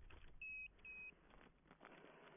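Orienteering control unit giving two short, high electronic beeps about a second in as the runner's punching stick registers.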